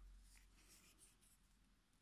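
Near silence, with a faint scratchy rustle in the first second as crochet hook and acrylic-looking yarn are handled.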